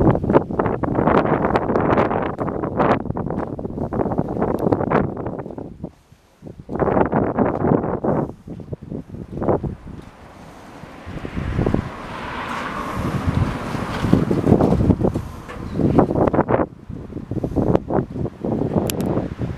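Wind buffeting the microphone in uneven gusts, with a brief lull about six seconds in.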